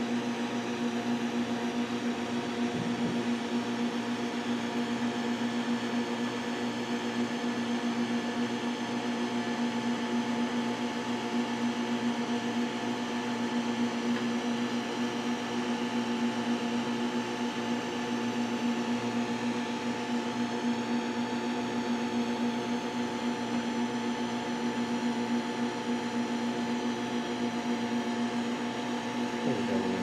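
A steady electrical or machine hum with a constant hiss, holding several fixed tones with the strongest low down. It runs unchanged throughout.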